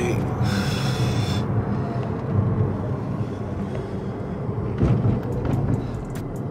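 Steady low rumble of road and engine noise inside a car cruising on a freeway, with a brief higher hiss about a second in.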